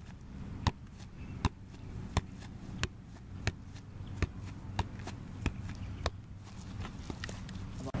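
Soccer ball being juggled with the feet, a sharp tap at each touch in a steady rhythm of roughly three touches every two seconds, over a low wind rumble on the microphone.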